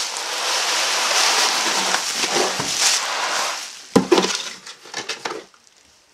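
Plastic bubble wrap rustling and crinkling as a wrapped item is pulled out of a cardboard box, then a sharp knock about four seconds in, with a few smaller rustles and knocks after it.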